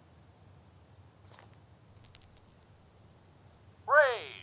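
Small metal coin clinking: a faint click, then about two seconds in a quick run of clicks with a brief high metallic ring. Right at the end a loud voice-like sound starts, falling in pitch.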